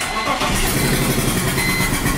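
BMW M52TU inline-six starting up suddenly and running with the number two cylinder's spark plug out, the plug's threads stripped from the aluminium head. It sounds pretty bad.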